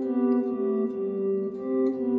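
Electric guitar playing two-note shapes: a high note is held while the bass notes below it walk down a scale, the bass changing every half second or so.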